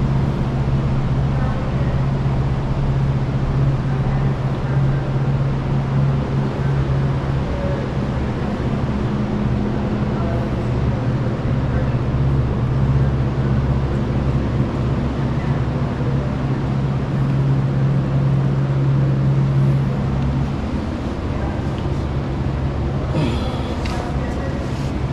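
A steady low mechanical hum that eases slightly about twenty seconds in.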